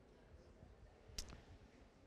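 Near silence: room tone, with one short click a little past halfway.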